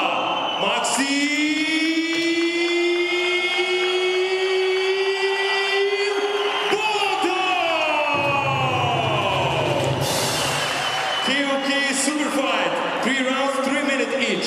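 Ring announcer's fighter introduction over the hall PA, the name drawn out in one long call that rises slightly in pitch for several seconds, then swoops down.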